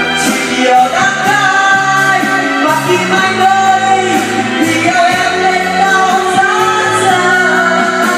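Karaoke: a man singing into a microphone over a loud backing track, holding long notes, amplified through the room's speakers.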